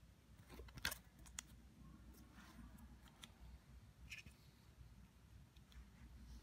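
Faint handling sounds of a photocard in a clear plastic sleeve: a sharp click about a second in, then a few lighter clicks and short rustles.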